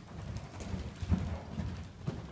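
Hoofbeats of a loose horse cantering on soft sand footing in an indoor riding arena: a run of dull, low thuds, the strongest a little after one second in.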